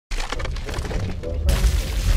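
Intro sound effect of stone slabs cracking and shattering over a deep rumble, with a louder crash about one and a half seconds in.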